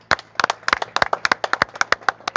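Audience clapping: a sparse, irregular patter of separate claps rather than a full dense round of applause.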